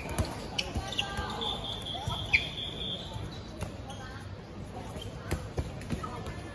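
Dodgeballs bouncing on an outdoor hard court: scattered single thuds, the sharpest about two seconds in, among children's voices. A shrill steady tone runs for about a second and a half near the middle.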